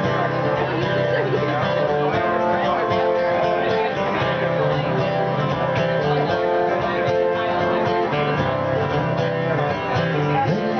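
Acoustic guitar strummed live, chords ringing in a steady rhythm.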